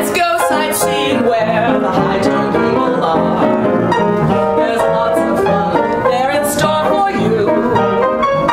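Upright piano playing a 1930s popular song in a ragtime style, with busy, continuous notes and no break.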